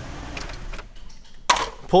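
Pontiac Aztek's 3.4-litre V6 idling, with a couple of light clicks; the engine sound drops away about a second in.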